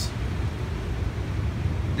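Furnace blower fan running with a steady low rumble. Its control board is bypassed, so the fan runs continuously.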